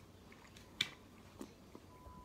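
Faint mouth sounds of a man chewing a bite of smoked pork spare rib, with a sharp click a little under a second in and a softer one later.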